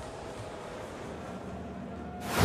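Steady, low background noise of an ice hockey arena, a faint even rumble with no distinct events.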